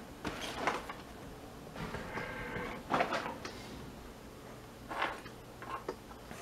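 Objects being handled: a few scattered clicks and knocks, with a brief squeaky scrape about two seconds in and a sharper knock just after, like a drawer or container being opened and rummaged through.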